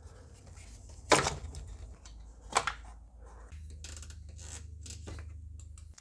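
Two sharp plastic clicks about a second and a half apart, with a few fainter ticks, as a quick-release clamp on a plastic air-intake hose is worked free by hand, over a low steady hum.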